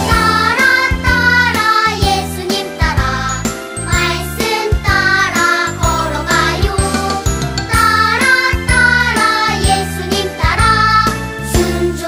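A children's worship song: a voice singing the melody over a backing track with a steady beat.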